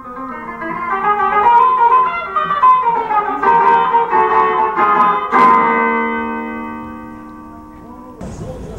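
Cavaquinho played solo: a quick run of plucked notes and chords, then a strummed chord about five seconds in that rings out and slowly fades.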